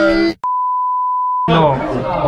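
A steady, high-pitched single-tone beep lasting about a second, a censor bleep edited over the talk; it starts and stops abruptly, with a click just before it.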